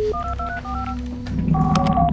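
Touch-tone telephone keypad beeps: a quick run of about six dialing tones, each a short two-note beep stepping in pitch, cutting in as a steady tone ends. Near the end a longer two-note telephone tone sounds over a low steady hum.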